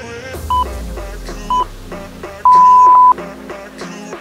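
Workout interval timer counting down the end of a rest period: two short beeps a second apart, then one longer, louder beep that marks the start of the next 40-second work interval. Background music plays underneath.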